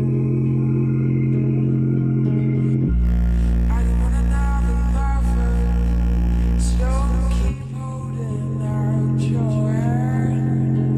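Bass-heavy music playing loudly through a JBL Flip 4 portable Bluetooth speaker, its passive radiator pumping. Deep bass tones are held throughout under a higher melody. An even deeper bass note comes in about three seconds in and cuts off about seven and a half seconds in.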